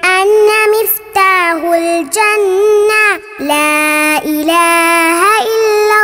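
A child singing an Arabic nasheed, a single voice in phrases of long held notes that bend and slide in pitch, with short breaks for breath between them.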